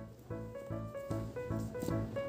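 Background music that cuts in abruptly, with keyboard-like notes repeating in a regular rhythm.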